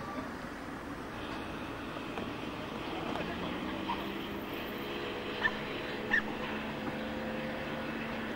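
Steady distant engine hum over outdoor background noise, with two short high-pitched calls a little after halfway.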